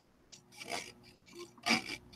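Paper being trimmed: a series of about five short, dry cutting and rubbing strokes.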